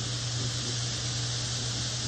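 Steady fizzing hiss of citric acid solution reacting with baking soda, the carbon dioxide foam piling up and bubbling, over a low steady hum.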